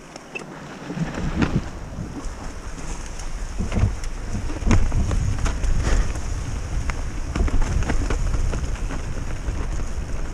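Mountain bike riding down a rocky dirt trail: wind buffeting the camera microphone, growing louder about a second in as the bike picks up speed, with tyres crunching over the dirt and many sharp clicks and knocks as the bike rattles over rocks and bumps.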